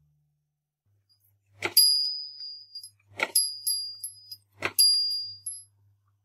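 A small bell on a motorised Nativity-scene shepherd figure is struck three times, about a second and a half apart. Each strike is a sharp ding that rings for about a second. A faint low hum from the small electric motor driving the figure runs underneath.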